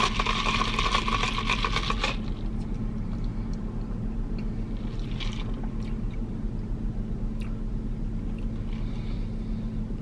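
A sip of an iced drink through a straw, lasting about two seconds and ending sharply, followed by the steady low hum of a car cabin.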